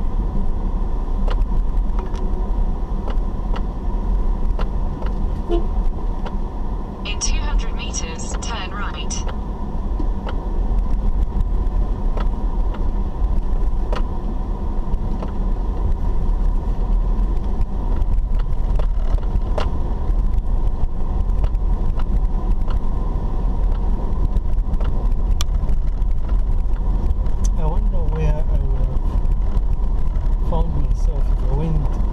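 Steady low rumble of a car driving slowly on a dirt road, heard from inside the cabin. A burst of rapid clicking lasting about two seconds comes about seven seconds in.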